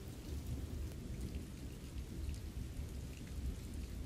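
Faint, steady rain ambience with a low rumble underneath, like distant thunder, and a few faint drop ticks.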